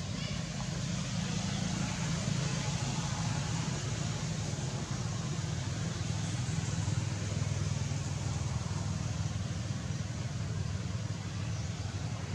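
Steady outdoor background noise: a constant low rumble under an even hiss, with no distinct events.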